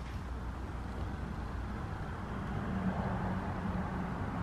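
Steady low background rumble with a faint hum, growing slightly louder in the second half.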